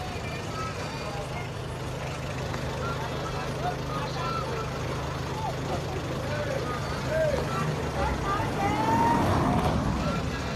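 Street ambience: a steady low engine hum under scattered distant voices. It grows louder from about seven seconds in and is loudest near the end.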